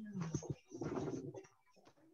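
Muffled, indistinct voice with a couple of soft knocks, dropping to quiet about three quarters of the way through.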